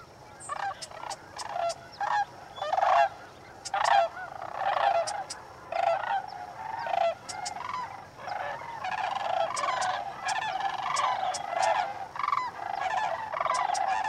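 A large flock of sandhill cranes calling, many birds at once with overlapping calls, in separate bursts at first and merging into a near-continuous chorus over the second half.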